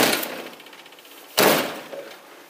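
Two heavy blows against a locked apartment door, one right at the start and one about a second and a half later, each ringing briefly: officers trying to force the door open.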